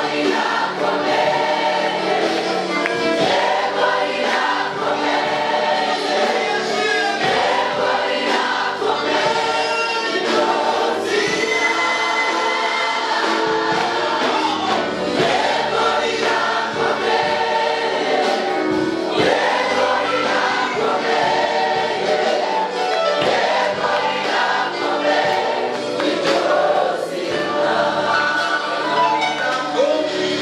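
Live gospel music: a choir of many voices singing together without a break.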